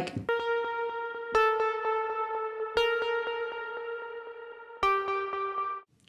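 Software synthesizer playing the 'Analog Unison' plucked-keys preset: four slow single notes, each ringing out with a repeating delay echo before the next. The last note is lower and cuts off near the end. The notes are spaced out because the long echo makes quick playing in time hard.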